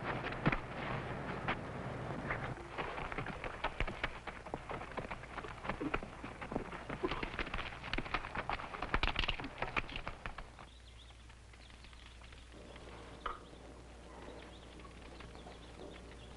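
Horse galloping: quick, irregular hoofbeats on hard dirt ground, dying away after about ten seconds.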